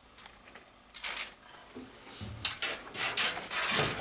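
A short rustle about a second in, then a run of sharp clicks and knocks that grows louder over a low rumble in the second half.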